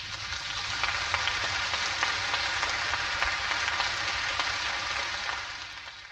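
Audience applause after a wind band performance ends, a steady crackle of many hands clapping that fades out near the end, heard on a worn, degraded tape recording.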